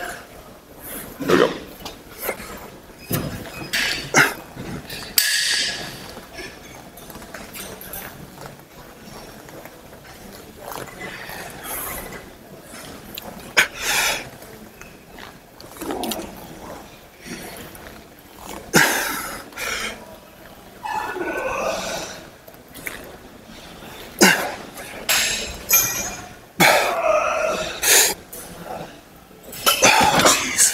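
Effortful grunts and hard breaths through a set of arm curls on a plate-loaded preacher-curl machine, with scattered knocks and clicks from the machine.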